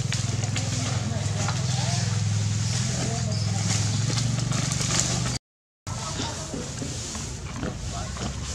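Outdoor background of people's voices talking at a distance over a steady low hum. The sound drops out completely for about half a second about two-thirds of the way through.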